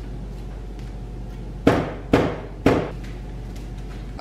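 Three sharp knocks, about half a second apart, starting in the middle, as the steel crash bar bolted to a Kawasaki KLR 650 is gripped and shaken to test it for flex.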